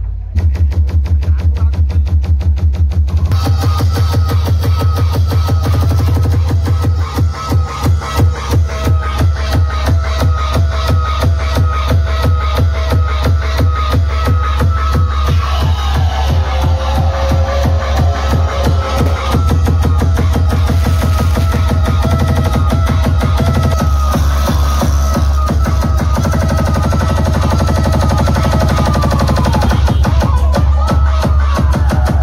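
A loud DJ sound system plays electronic dance music with very heavy bass and a fast, steady beat. A higher melody line runs over it, and the mix grows fuller about three seconds in.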